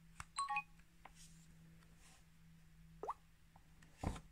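Samsung Galaxy Note smartphone playing a short electronic chime of several stacked tones just after a click, as its USB charging cable goes in. About three seconds in comes a brief rising chirp, and a dull knock of handling as the phone is picked up near the end.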